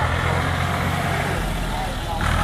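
Ford farm tractor engine running at low revs while the tractor is driven slowly through the course, a steady low rumble whose note shifts about a second and a half in.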